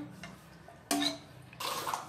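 Quiet kitchen sounds: a brief clink of a utensil about a second in, then a short pour of liquid near the end as the milk mixture goes into a plastic popsicle mold.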